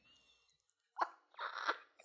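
About a second of near silence, then a short, quiet, breathy laugh.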